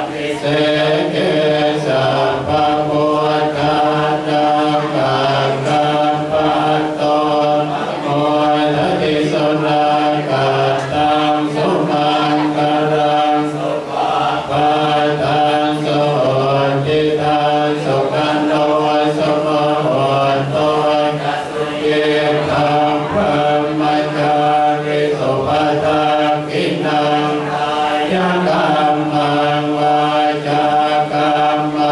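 Group of Buddhist monks chanting in unison, a continuous low drone held on a few steady pitches that step up and down slowly.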